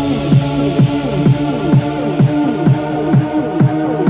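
Electro progressive house track in a stripped-down passage: a steady kick drum, about two beats a second, under a held low synth note, with the treble filtered down.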